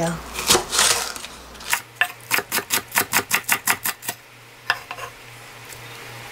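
Kitchen knife chopping a green onion on a wooden cutting board: a quick, even run of about fifteen chops at roughly six a second, followed by one more knock.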